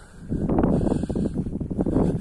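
Wind buffeting a phone's microphone outdoors: a loud, uneven low rumble that starts about a third of a second in.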